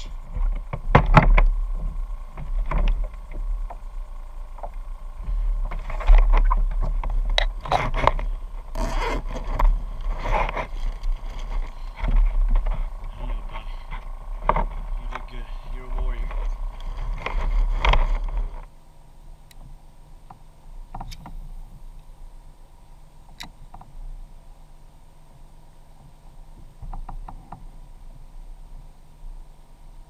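Knocks, scrapes and splashy handling noises on a plastic fishing kayak as a caught fish is handled, over a loud, uneven low rumble. About eighteen seconds in, the sound drops suddenly to a quieter steady hum with a few faint clicks.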